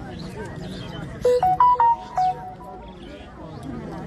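Crowd chatter, with a short electronic melody of about six quick beeping notes stepping up and down in pitch a little over a second in. The notes are much louder than the chatter.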